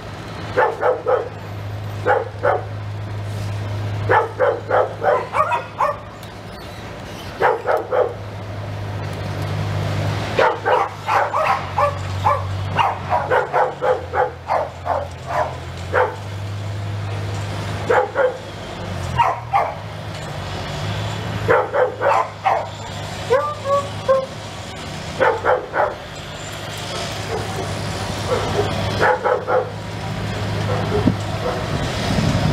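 A dog barking over and over in quick runs of several barks, a fresh run every couple of seconds, over a steady low motor hum.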